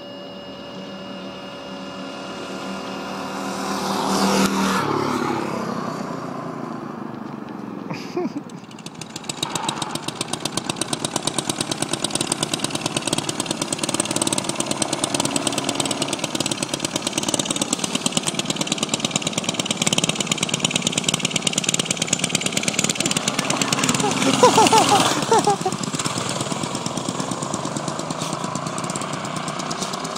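Small single-cylinder minibike engines running: one swells loud and passes about four seconds in, then a steady rapid putter sets in from about ten seconds, rising in pitch as it revs and is loudest around twenty-five seconds. A short laugh comes in near the eight-second mark.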